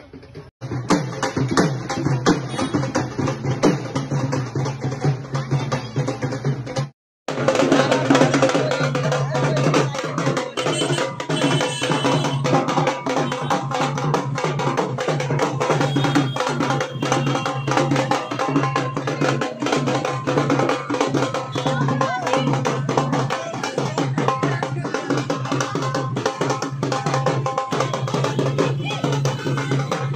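Dhol drums beaten in a fast, driving rhythm for dancing, with crowd voices mixed in. The sound cuts out for a moment about seven seconds in.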